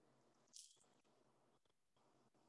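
Near silence: faint room tone over a video-call line, with one brief, soft high-pitched noise about half a second in.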